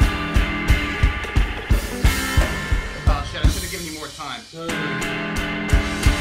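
Guitar and drum kit jamming together: steady kick-drum hits under held guitar chords, with a cymbal crash about two seconds in. About three seconds in the drums drop out under a swirling, falling guitar passage, and the full band comes back in just before five seconds.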